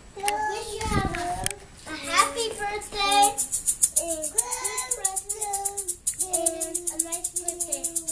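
Young children singing, joined about three seconds in by a maraca shaken in an even rhythm, about five or six shakes a second.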